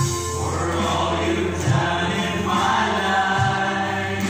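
A small group of worship singers singing a gospel song together into microphones, with steady instrumental backing underneath.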